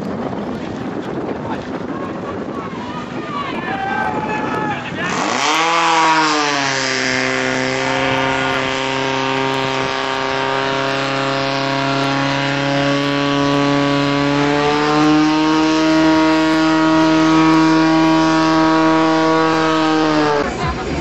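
Portable fire pump engine starting up about five seconds in, revving quickly to high speed and then running hard and steady, its pitch rising a little again near the end, as it drives water out through the attack hoses.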